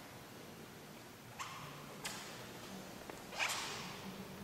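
Three short, sharp clacks in a reverberant room, about a second and a half in, two seconds in and, loudest, about three and a half seconds in, over a faint low room hum.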